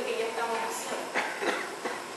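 A woman speaking.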